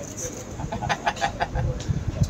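Quick run of short staccato laughing pulses, about ten a second, lasting under a second near the middle of the stretch.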